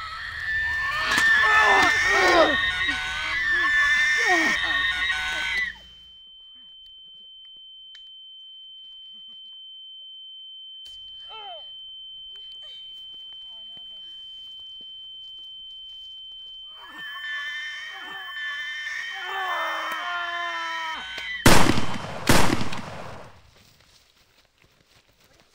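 Agitated voices, then a single steady high ringing tone, a film's ear-ringing effect after a blast, held for about fifteen seconds while muffled voices fade back in. Near the end, two loud gunshots about a second apart cut it off.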